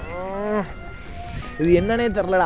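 Two drawn-out vocal calls: one long, slightly rising-then-falling call at the start, and a second with a wavering pitch near the end.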